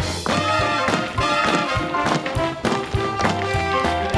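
Swing-style show music from a theatre orchestra, with tap shoes striking the stage in quick, uneven rhythms over it.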